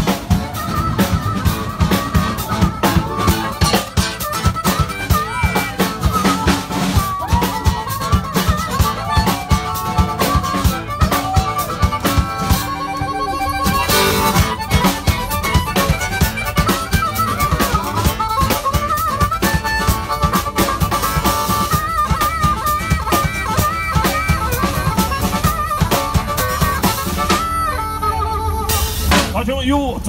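A harmonica solo is played into a microphone and amplified, over a steady percussion beat, during an instrumental break in a live band's song.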